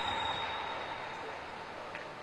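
Steady, fairly quiet ambient noise of an indoor velodrome, with no distinct events, fading slightly.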